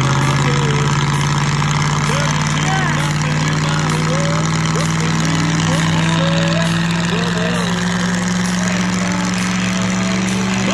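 Ford Crown Victoria P71's 4.6-litre V8 held at steady revs during a burnout, a loud drone that climbs slightly in pitch near the end, with the spinning rear tyre squealing in short wavering chirps.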